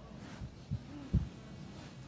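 Two dull, low thumps about half a second apart, the second louder, over faint room tone.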